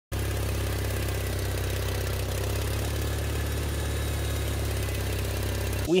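A tractor engine idling steadily with an even low-pitched running sound, cutting off abruptly just before the end.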